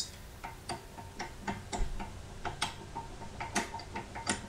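Loose rear hub on a DuraBlue X-33 pin axle rocked back and forth by hand, clacking metal on metal in quick uneven clicks, about three or four a second. The clicking is the sign of excess play at the hub, which the owner puts down to the pin bolt not being tight enough.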